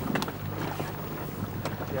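Outboard motor of a Zodiac inflatable running with a steady low hum as the boat moves through brash ice, wind buffeting the microphone, with a few sharp clicks.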